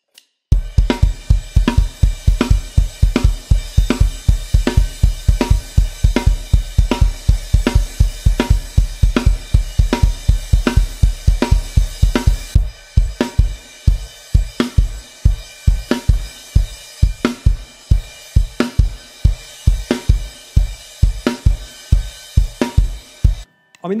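Mapex Orion drum kit played at a fast 160 BPM, with the bass drum and a Zildjian A crash cymbal struck together, over snare and hi-hat. For about the first half the bass drum hits come in an even run of about four a second; then the pattern thins out into uneven groups of hits. The kit stops just before the end.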